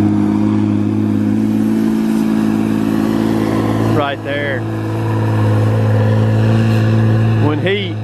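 Tigercat 635D skidder's diesel engine held at full throttle as the machine drives itself forward, a loud, steady drone.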